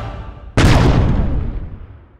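Music fading out, then about half a second in a single loud blast sound effect that dies away over about a second and a half with a falling tone.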